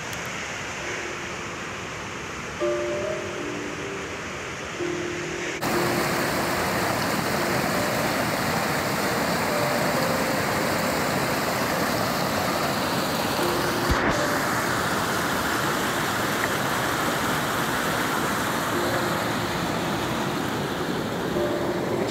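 Fast mountain stream rushing and cascading over rocks and fallen logs: a steady roar of water that becomes suddenly much louder about six seconds in.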